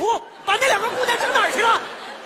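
Speech only: a voice delivering a line of dialogue in Mandarin.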